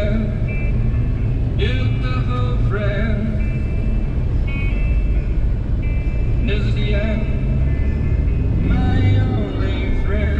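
Inside a moving car: a steady low engine and tyre rumble, with music that has singing in it playing over the top.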